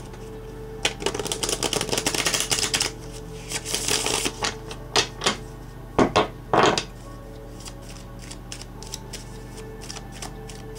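Tarot cards being shuffled and handled: a rapid run of card flicks for about two seconds, a brief rustle, then a few louder separate taps and slaps around the middle, with only faint ticks after.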